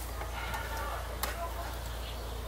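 Faint handling of the truck radio's wiring and plastic harness connectors, with a couple of light ticks, over a steady low hum.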